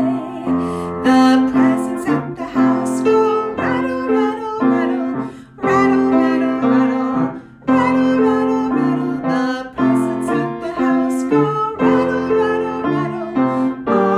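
Piano music: a melody and chords played over a held low note, with a singing voice coming in at times.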